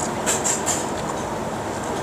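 Steady, even background noise of a busy outdoor urban place, like distant traffic or a nearby machine, with a few short, light clicks in the first second.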